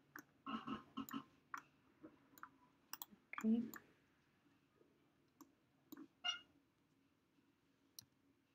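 Irregular clicks of a computer mouse and keyboard, a quick cluster in the first second then scattered single clicks, as 3D modelling software is worked.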